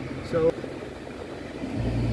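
Car engine and cabin noise heard from inside the car, a steady low hum that suddenly grows louder and deeper near the end.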